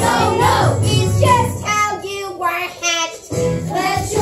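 A group of young voices singing a musical-theatre number together over instrumental accompaniment; the accompaniment thins for about a second past the middle, then comes back in.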